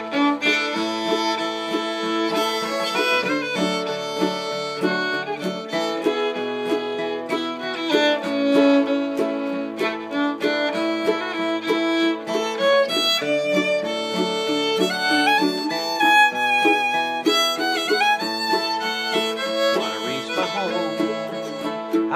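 Bluegrass instrumental break: a fiddle carries the melody with sliding notes over strummed acoustic guitar rhythm.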